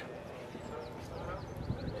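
Faint outdoor background sound: distant voices and bird calls, with a few quick high chirps near the end.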